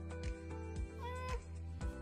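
Background music with a steady beat. About a second in, a brief high tone rises and then holds for a moment.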